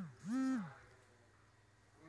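A person's voice making two short pitched vocal sounds, each gliding up, holding briefly and gliding down in pitch, the second ending under a second in.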